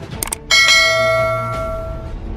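Two quick clicks, then a bright bell ding that rings and fades over about a second and a half: the notification-bell sound effect of a subscribe-button animation.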